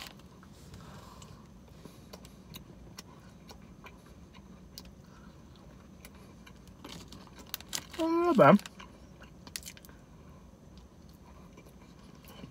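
Close chewing of a soft chocolate chip cookie: quiet mouth clicks and smacks throughout, with one short hummed vocal sound about eight seconds in, the loudest sound.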